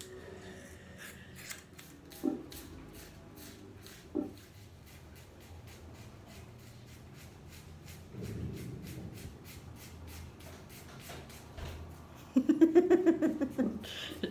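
Hair being cut and shaved off a head: a run of faint, quick, crisp clicks a few a second, with two louder knocks about two and four seconds in.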